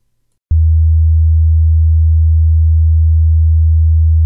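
A loud, steady low electronic tone, a pure hum that switches on abruptly about half a second in and holds at one pitch.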